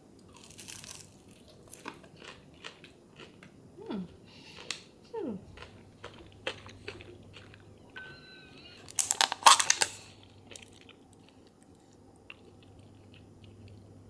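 A person biting into and chewing crispy batter-fried fish close to the microphone: scattered crisp crunches, with a loud burst of crunching about nine seconds in.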